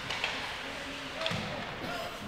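Ice hockey rink ambience during play: faint spectator voices and on-ice noise, with one dull thud about a second and a quarter in.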